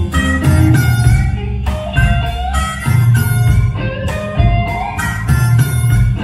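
Live rock band playing: electric guitar over bass guitar, with drums keeping a steady beat of about two hits a second and a few bent guitar notes.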